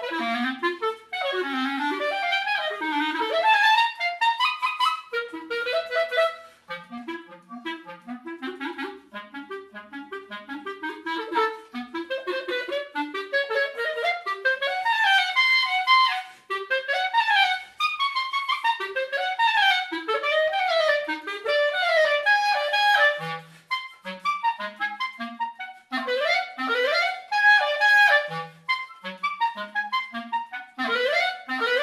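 Solo clarinet playing fast runs and arpeggios that sweep up and down across a wide range, broken by a few short pauses between phrases.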